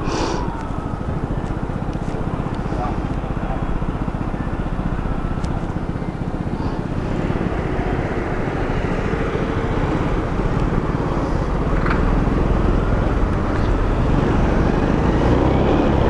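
Honda Biz small single-cylinder four-stroke motorcycle running steadily while riding in traffic, under a constant rumble of wind on the camera microphone; it gets a little louder in the last few seconds.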